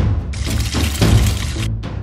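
Background music with a sudden cracking, shattering sound right at the start, an eggshell-breaking effect for a hatching toy dinosaur egg.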